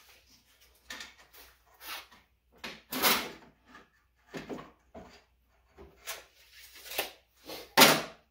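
Irregular wooden knocks and clunks as a board is handled and set in an old miter box on a wooden workbench, with a sharper knock about three seconds in and the loudest just before the end.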